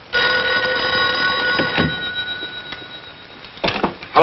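An old desk telephone's mechanical bell ringing once: a steady ring of about a second and a half that then dies away. A short knock follows near the end.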